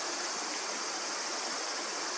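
Steady outdoor ambience of running water, an even hiss, with a high insect chorus over it.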